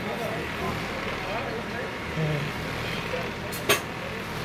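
Shop ambience: faint background voices of other people talking over a steady din, with one sharp click near the end.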